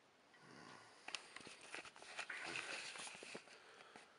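Faint handling noise from a handheld camera being moved: soft rustling with scattered clicks, busiest in the middle seconds.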